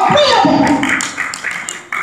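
A voice calling out with a falling pitch, over quick, steady rhythmic tapping like hand-claps in a church service.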